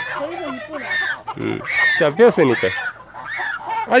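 An African goose, caught and held in a person's arms, honking again and again in distress. A person's voice is mixed in among the calls.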